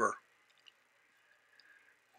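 Near silence, broken only by two or three very faint ticks.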